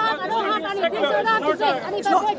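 Several people talking over one another in a crowd; no single voice stands out.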